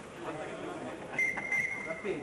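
A single steady high whistle tone starts a little past halfway and holds for over a second, typical of the signal that starts play. Voices murmur in the hall around it.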